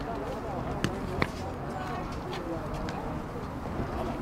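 Distant voices of players and spectators calling out across an outdoor football pitch, with two sharp knocks about a third of a second apart around a second in.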